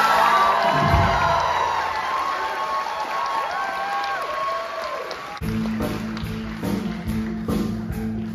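Audience applauding and cheering at the end of a stage musical number, over its last held note. About five and a half seconds in, the keyboard-led pit band starts scene-change music with a steady drum beat.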